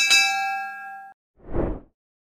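Notification-bell 'ding' sound effect: one bright chime strike with several ringing tones that fade and cut off about a second in. It is followed by a short whoosh near the end.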